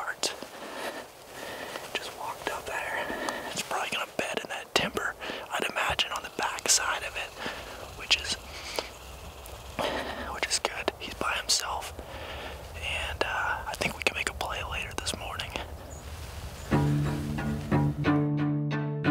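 Hushed whispering between hunters, with scattered small clicks and rustles. A low string score with cello and double bass comes in near the end.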